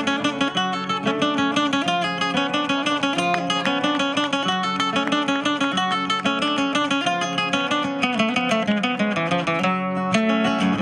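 Two acoustic guitars played by Argentinian payadores: a steady instrumental passage of plucked and strummed notes, with no singing.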